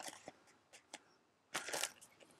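Clear plastic bag around a model kit's decal sheet crinkling as the sheet is handled and turned over: a few faint clicks, then a short louder crinkle about a second and a half in.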